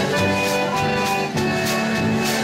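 Old-time polka band playing live, led by a concertina holding sustained chords over a steady beat.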